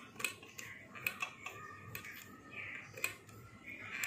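Irregular small clicks and ticks as a plastic hook is pushed between the plastic pegs of a rubber-band bracelet loom, catching and lifting the rubber bands.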